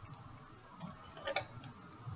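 Faint ticks from small handling of makeup things, a lipstick tube and a hand mirror, with one sharper click about a second and a quarter in.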